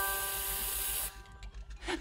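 A spray nozzle hisses as it coats a metal lump in gold paint, over held music notes. The hiss stops about a second in and the music carries on more quietly.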